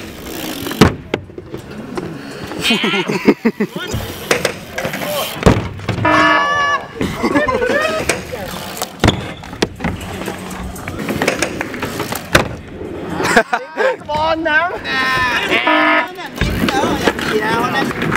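Several people talking, calling out and laughing, broken by a few short sharp knocks.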